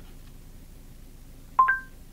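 Android Auto's short two-note electronic chime played through the car's speakers about one and a half seconds in, a lower tone joined by a higher one: the voice assistant's signal that it has stopped listening and is handling the spoken request. Around it, faint in-car room tone.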